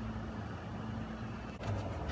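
A steady low mechanical hum, even in level throughout, with a brief break in the background about one and a half seconds in.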